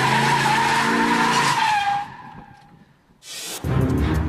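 Car tyres squealing in one long, slightly wavering screech as the car spins a donut on asphalt, with a lower engine note underneath. The screech fades out about two seconds in, and a low music bed starts near the end.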